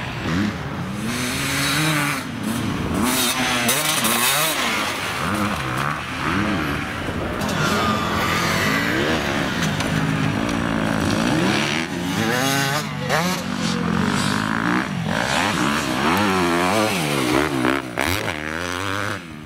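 Enduro dirt bike engines revving hard as the bikes pass one after another over rough, jumpy track. The engine pitch rises and falls again and again as the riders open and close the throttle and change gear.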